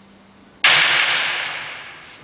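A low held note fades out. About half a second in comes a single loud percussion crash, like a struck cymbal, which rings down over about a second and a half.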